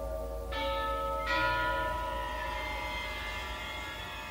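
A soft passage from an orchestral piano concerto: bell-like chords are struck twice, about half a second and just over a second in, and ring on, fading slowly over sustained tones and a low drone.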